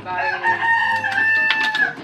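A rooster crowing: one long call, rising briefly at the start and then held for nearly two seconds.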